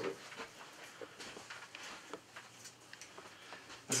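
Faint, scattered light clicks and taps of objects being handled, a few per second, in a quiet small room.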